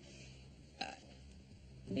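A single short burp, a little under a second in.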